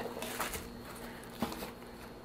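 Faint handling of a zippered hard-shell case being opened, a soft rustle with two light taps, about half a second and a second and a half in.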